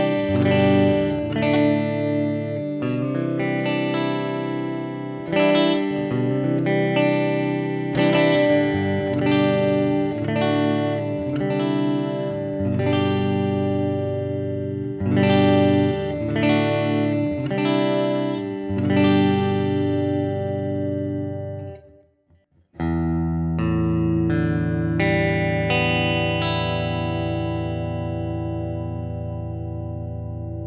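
Les Paul-style electric guitar strung with a brand-new set of 10–46 strings, played with a clean tone through a Kemper profiling amp: a sequence of strummed chords. About 22 seconds in the playing stops briefly, then a few more chords are strummed and the last is left ringing, slowly fading.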